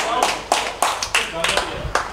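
A group of people clapping together in a steady rhythm, about three claps a second, with voices over the claps.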